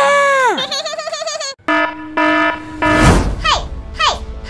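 Cartoon sound effects over music: a falling pitched tone, then a warbling one, a short musical phrase of pulsing notes, and a whoosh about three seconds in, followed by short falling chirps.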